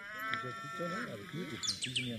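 Livestock bleating in wavering calls, with a bird's short call sliding downward near the end.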